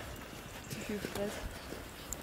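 Footsteps and the taps of a pair of forearm crutches on a paved path, a string of light knocks from a person walking on crutches.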